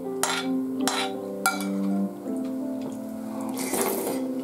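Background music of steady held notes plays throughout. Over it, a metal spoon clinks and scrapes in a bowl of rice porridge a few times, and near the end there is a noisy slurp as a spoonful is eaten.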